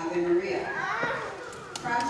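Children in an audience chattering and calling out over one another, with one high child's voice gliding up and then down about halfway through. No handbells are ringing.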